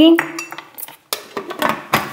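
Several sharp clicks and knocks of hard plastic as the lid is handled and fitted onto a plastic blender jar, just before blending.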